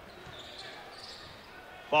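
Basketball arena ambience: a low crowd murmur with a basketball being dribbled on the hardwood court.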